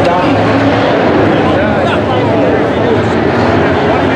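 Dirt-track modified race cars' engines running on the oval during the feature, a steady loud drone, with voices over it throughout.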